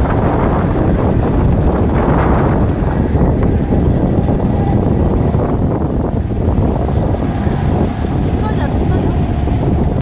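Wind buffeting the microphone as a loud, steady low rumble, with faint voices in the background.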